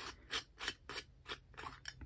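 Small screw-top metal tin being unscrewed by hand from a stack of tins: a run of short ticks and scrapes from the metal threads, about four a second.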